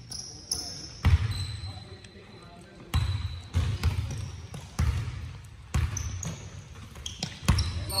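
A basketball being dribbled on a hardwood gym floor: about seven irregular bounces, each echoing in the large hall.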